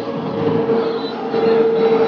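Steady running noise of a moving vehicle, with a constant hum held on one pitch.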